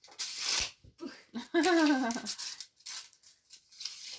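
A woman's short exclamation, "ukh", its pitch rising and then falling, after a brief hiss; faint handling rustles and light clicks follow.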